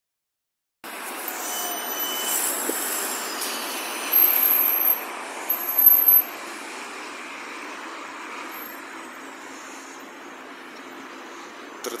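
Street traffic noise as an electric trolleybus passes close by. The noise swells twice, about four and six seconds in, then settles to steady traffic noise.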